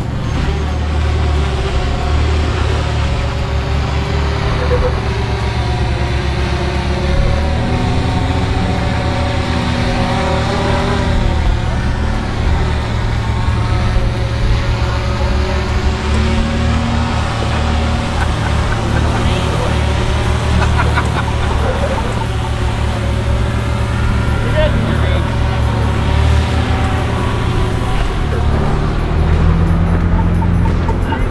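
Ford Bronco's engine running at low speed under load as it crawls up a steep rock climb in rock crawl mode, a steady low rumble that rises and falls slightly in pitch, with voices around it.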